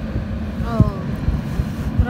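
Hovercraft running out on the ice, a steady engine-and-propeller drone, with wind buffeting the microphone.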